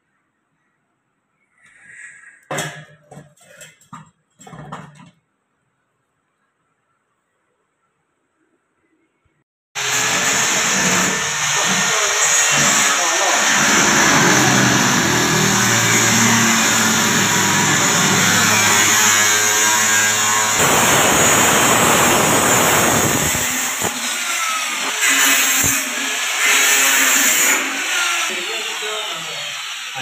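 Angle grinder cutting through the thin sheet metal of a tin, starting abruptly about ten seconds in with a loud, high grinding whine that runs steadily, changing pitch slightly as the cut goes on. Before it come a few short knocks and a stretch of near silence.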